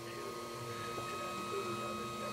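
A faint steady hum with a few held tones, and one faint tick about a second in.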